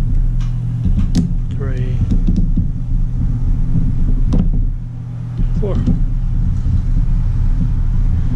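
A steady low mechanical hum throughout, with two sharp clicks, one about a second in and one about four and a half seconds in, from small screws being driven in to hold a laptop's CPU heatsink down. A couple of short murmured voice sounds come between them.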